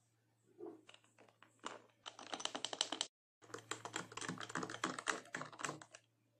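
A spoon stirring iced coffee in a glass mug: quick clinking and rattling of spoon and ice cubes against the glass. It comes in two runs, starting about two seconds in, with a brief break just after three seconds.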